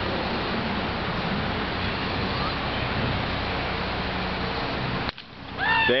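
Steady outdoor noise with a faint low hum that cuts off abruptly about five seconds in. A man's voice comes in just before the end.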